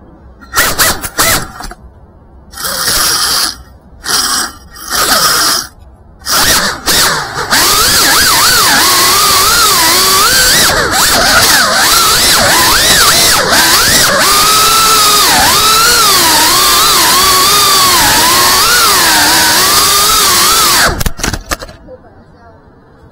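FPV quadcopter's brushless motors and propellers: several short throttle bursts over the first seven seconds, then a continuous loud whine whose pitch wavers up and down with the throttle, cutting off about a second before the end.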